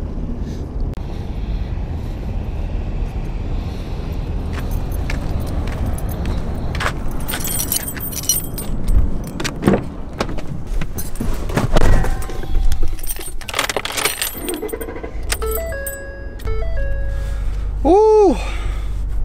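Steady low outdoor noise, then keys jangling with clicks and knocks as a vehicle door is opened and shut. Near the end comes a short run of electronic chime tones, and a low steady hum sets in.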